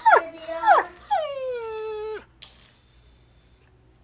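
Yorkshire terrier whining: two short high cries that fall steeply in pitch, then a longer whine about a second in that slides down, holds steady and cuts off.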